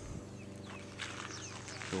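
Quiet outdoor background with a few faint, short bird chirps in the first second over a low steady hum.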